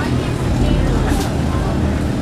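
Steady low rumble under faint, indistinct voices.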